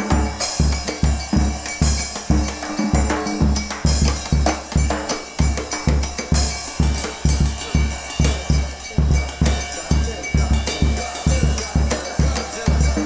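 A brass band with a drum kit playing an up-tempo tune: deep bass notes and drum hits land on a steady beat, with horn parts and cymbal crashes over them.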